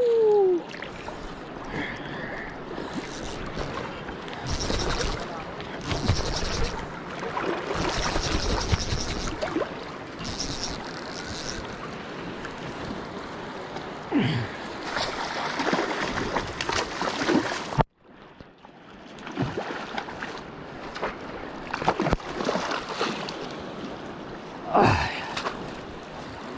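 River water rushing and splashing close to the camera while a hooked sockeye salmon is fought in, with louder stretches of splashing between about four and twelve seconds in, and a few short gasps.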